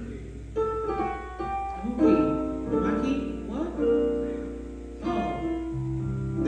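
Instrumental music: single notes and chords played slowly, each one ringing and fading before the next.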